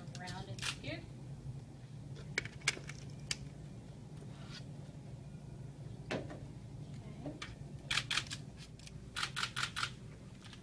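Scattered sharp clicks and taps over a steady low hum, ending in a quick run of about five clicks.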